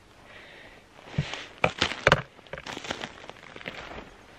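Footsteps crunching on dry twigs and stony forest soil while climbing uphill: an irregular run of sharp snaps and crackles.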